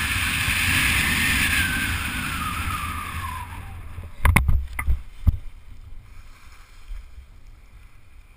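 Rushing wind over a skydiver's helmet camera during a canopy swoop, with a whistle that falls steadily in pitch as the speed bleeds off, fading out. A few sharp thumps about four to five seconds in as the skydiver touches down on the grass, then much quieter.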